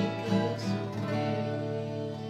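Acoustic guitar being strummed, its chords ringing on between the strokes.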